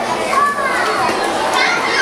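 A large crowd of children chattering and calling out at once, many high voices overlapping.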